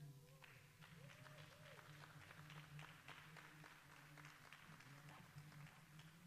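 Near silence: a faint low hum with scattered faint clicks, after music fades out just after the start.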